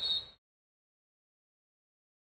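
A brief tail of game audio: a steady high-pitched tone over faint background noise, cut off abruptly about a third of a second in. After that there is total silence.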